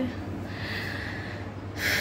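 A woman breathing in a pause between sentences: a soft breath out, then a short, sharp intake of breath near the end.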